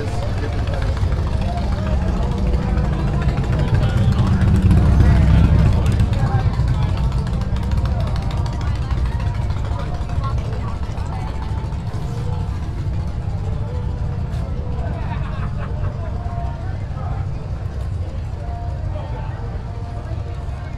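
Low motorcycle engine rumble from street traffic, swelling to its loudest about five seconds in and then easing off, under a background of crowd chatter and music.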